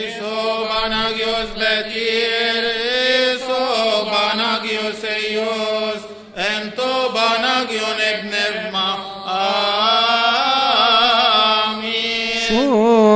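A man's voice chanting a slow, melismatic Coptic liturgical chant, drawing out long wavering notes, with a pause for breath about halfway before the next phrase.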